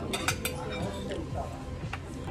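Metal cutlery clinking against ceramic dishes: three quick, ringing clinks in the first half-second, then lighter table clatter.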